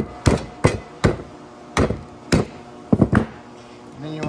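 Hammer striking a steel brake caliper bracket to knock the old brake pads out: about eight sharp metallic strikes at an uneven pace, each ringing briefly.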